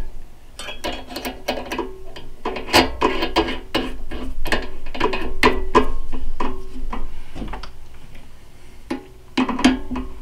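A drill bit being handled and fitted into a drill press chuck: a rapid run of sharp metallic clicks and clinks, some ringing briefly.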